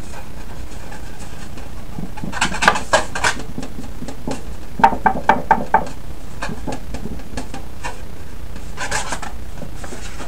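A stiff sheet being bent and folded by hand, giving short clusters of crackles and taps: a few a couple of seconds in, a quick run of about five sharp knocks a little before the middle, and a brief crackle near the end, over a steady low hum.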